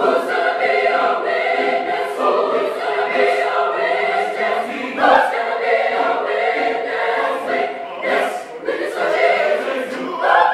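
Large mixed choir singing a rhythmic gospel spiritual in full harmony, with a brief break in the singing about eight seconds in.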